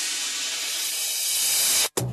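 A long hissing noise sweep used as a transition in a dance music mix, holding loud and swelling slightly, then cutting off suddenly near the end.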